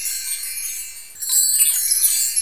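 High, shimmering chimes that fade and then swell up again a little over a second in.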